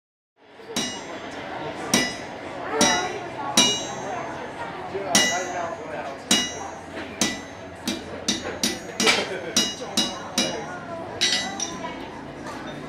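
Blacksmith's hand hammer striking on an anvil, a series of sharp ringing blows at an uneven pace that grows quicker near the end.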